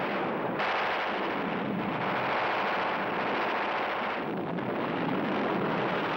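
Continuous battle noise of gunfire and explosions, a dense unbroken din that grows harsher about half a second in.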